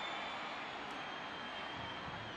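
Steady crowd noise in a baseball stadium while a fly ball is in the air.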